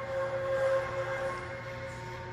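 A steady mechanical or electrical hum made of several held tones over a low drone, with no rhythm or impacts.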